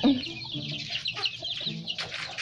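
Several chickens clucking, with many short high chirps throughout.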